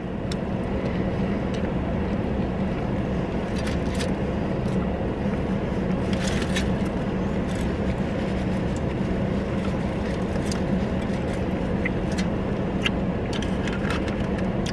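Steady hum of a parked car's running engine and ventilation heard inside the cabin, with scattered soft clicks of chewing and paper handling.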